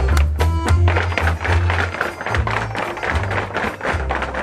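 Recorded Irish jig music playing with a steady bass beat, over many sharp clicks of Irish dancers' hard shoes striking a stage floor in a heavy jig.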